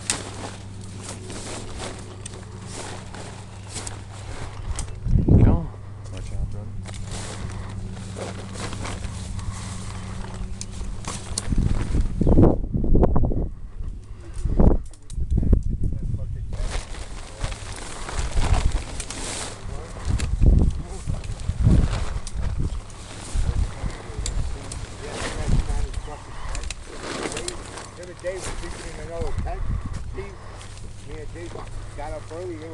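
Instant dome tent being handled: its fabric rustling and crinkling, with repeated low thumps as the folded tent and its frame are moved about. A steady low hum runs under the first third and then stops.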